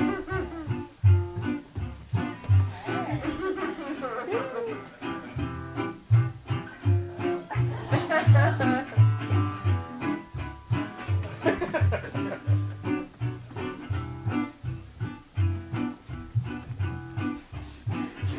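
Live acoustic music: a plucked string instrument playing a twangy melody with some sliding notes over bass notes that fall about twice a second.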